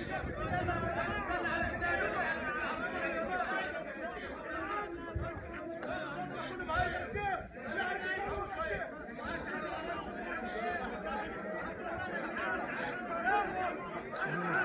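A large crowd of men talking at once, a continuous babble of many overlapping voices.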